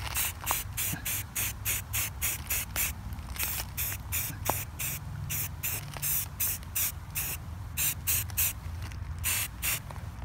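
Aerosol spray-paint can sprayed in short, rapid hissing bursts, about two or three a second, with a couple of brief pauses.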